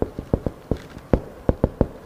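Marker pen writing Chinese characters on a whiteboard: a quick, slightly uneven run of short taps, about five or six a second, as each stroke hits the board.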